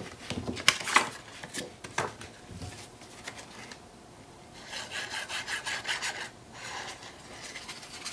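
Paper being handled with a few light taps, then the nozzle of a liquid glue bottle dragged across the back of a sheet of patterned paper, a scratchy rubbing in two stretches, the longer one about halfway through.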